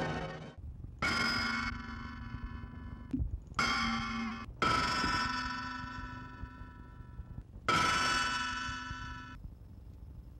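Four struck bell-like chime tones on the soundtrack, coming about a second in, twice close together a few seconds in, and once more near the end. Each one rings on and then stops abruptly.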